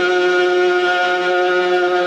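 Male Quran reciter in melodic mujawwad style holding one long drawn-out vowel at a steady pitch.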